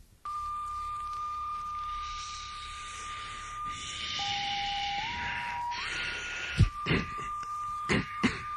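A steady, high electronic tone held on one pitch over tape hiss. About four seconds in it drops lower, then steps back up in two stages and settles on the first pitch again. A few thumps come near the end.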